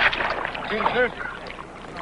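Water splashing and churning as a scuba diver moves at the surface beside a rowboat, with a sharp splash at the start and two short arching pitched sounds about a second in.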